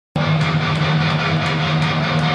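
Heavy metal band playing live: loud distorted electric guitars and drums, with cymbal hits about three times a second. The sound cuts in abruptly just after the start.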